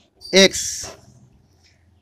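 Speech only: a man's voice says the single word "x", then there is quiet room tone for about a second.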